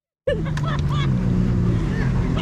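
Jet ski engine idling with a steady low hum, with faint voices over it; the sound cuts in after a brief silence at the very start.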